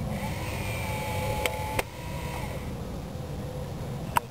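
RC battle tank's airsoft gun unit: its small electric motor whines for about a second, then a single sharp snap as it fires a 6 mm paint round, over a steady low rumble.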